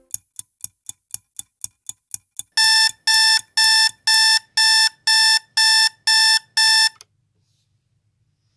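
Clock ticking about four times a second, then an alarm clock beeping: nine loud, short, high-pitched beeps, about two a second, that stop abruptly about seven seconds in.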